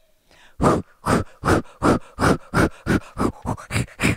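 A person blowing hard in rapid puffs of breath, about ten in a row, quickening a little toward the end: a puppeteer voicing a puppet blowing at a flower.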